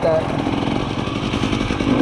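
Husqvarna TE300i dirt bike's two-stroke single-cylinder engine running steadily under way, a rapid even stream of firing pulses.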